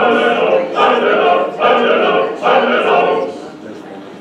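Cantorial singing from an early sound-film soundtrack, played back over speakers in a hall: four short sung phrases with brief breaks between them, the last fading away near the end.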